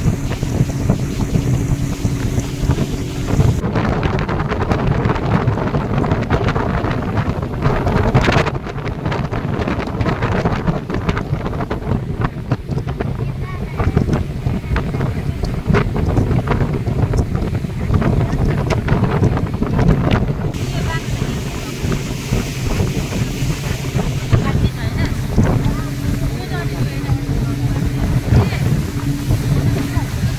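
Motorboat engine running steadily at speed, a low even hum under water rushing past the hull and heavy wind buffeting the microphone.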